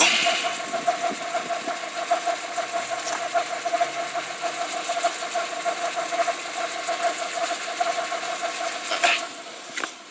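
A car engine idling close by, heard from down beside its front wheel. A steady whine runs through it, and the sound drops away just before the end.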